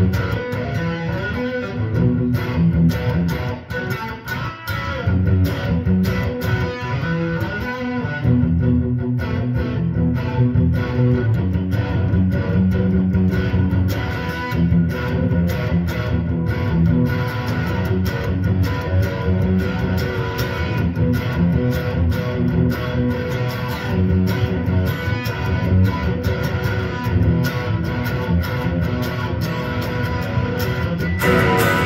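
Electric guitar being played: a continuous run of picked notes and chords, with a brief dip in level about four seconds in.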